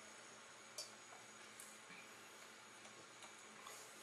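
Near silence: room tone, with a faint click a little under a second in.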